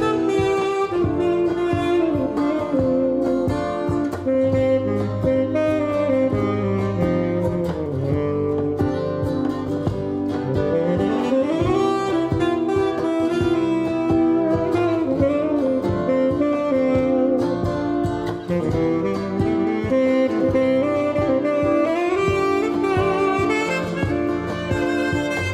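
Tenor saxophone playing a jazz melody of long held notes with sliding pitch bends, a clear rising glide about eleven seconds in, over guitar accompaniment.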